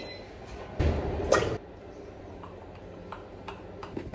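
Kitchen handling sounds: a scraping rustle lasting under a second, about a second in, then a few light clicks and taps as a plastic storage container is fetched and handled at the counter.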